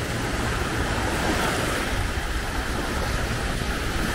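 Small surf breaking and washing up onto a sandy beach, a steady rush of water, with wind buffeting the microphone.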